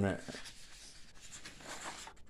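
Paper sheets rustling and scraping as they are handled and leafed through in a ring binder, a little louder near the end.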